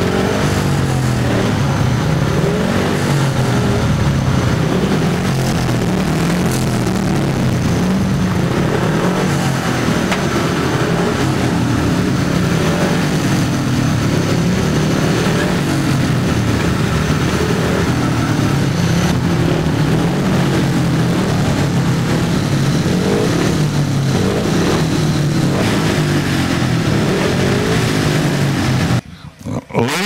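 Speedway bikes' single-cylinder methanol engines running, their pitch rising and falling as the throttles are blipped. The sound breaks off sharply about a second before the end.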